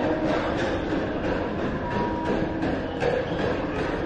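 Steady rumbling background noise of a large indoor space, even throughout, with a faint short tone about two seconds in.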